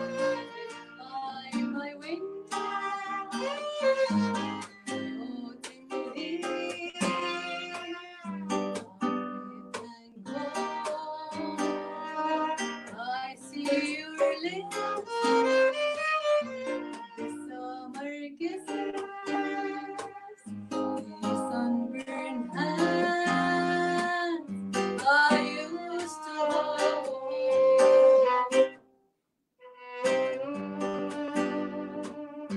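Violin and acoustic guitar playing together: the violin carries a sliding, expressive melody over plucked guitar chords. The sound cuts out for about a second just before the end.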